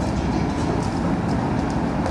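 A steady low rumble of background noise, even and unbroken, with no clear pitch.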